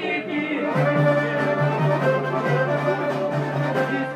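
Albanian folk music: a mainly instrumental passage with sustained melody notes over a steady low drone that comes in under a second in, and a regular beat.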